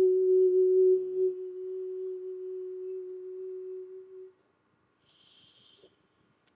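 A woman's singing voice holding one long final note. It starts full, thins to a soft, pure hum, fades and stops about four seconds in. A faint hiss follows near the end.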